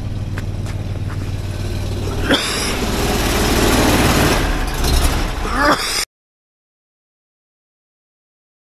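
Engine-driven high-pressure pump of a sewer-jetting truck running steadily while it is being switched off. About two seconds in, a loud rushing noise sets in for a few seconds, and about six seconds in the sound cuts off abruptly to total silence.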